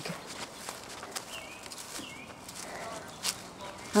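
Footsteps on dry, leaf-strewn ground, with two short, high, falling chirps about a second and a half and two seconds in.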